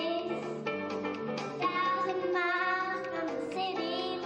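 A young girl singing into a microphone over a backing track of music.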